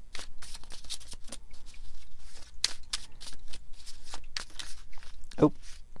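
A deck of tarot cards being shuffled by hand: a quick, uneven run of papery flicks and snaps.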